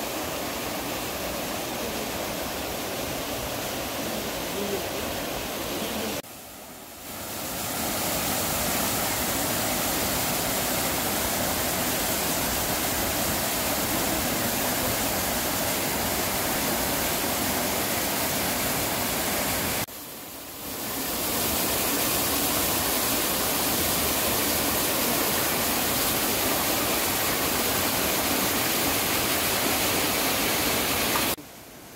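Rushing water of a mountain waterfall and stream in a rocky gorge, a steady full hiss. It cuts out briefly twice, about six and twenty seconds in, and swells back each time.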